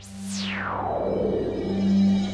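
Electronic intro sting: a whoosh that sweeps down in pitch over about a second, over a steady low synthesizer tone.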